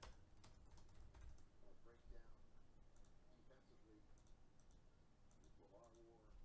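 Faint, scattered clicking of typing on a computer keyboard, the room otherwise near silent.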